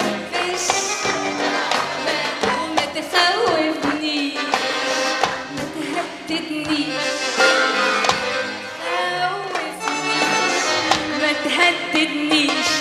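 Live Arabic pop song: a female lead vocalist sings over a band with melody instruments and busy percussion strikes.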